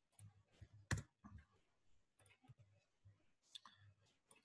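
Faint, irregular computer keyboard keystrokes and clicks, the loudest about a second in.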